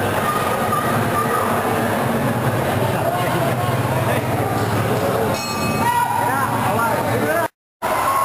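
Crowd of spectators at a boxing bout talking and shouting in a steady, loud din, with a few voices standing out. The sound drops out for a moment near the end.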